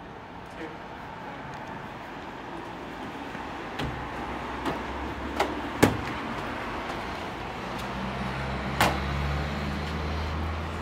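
Street noise with a motor vehicle engine running in a low steady hum from about four seconds in, and several sharp knocks, the loudest about six seconds in.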